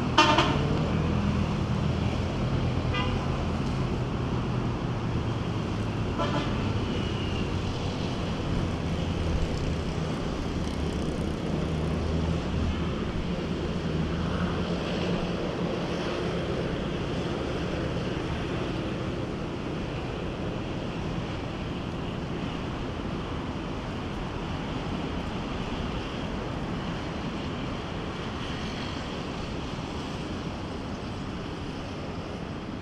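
Road traffic passing beside the promenade: a loud horn toot at the very start, fainter toots about three and six seconds in, and an engine's low hum that fades away about halfway through, over a steady wash of traffic noise.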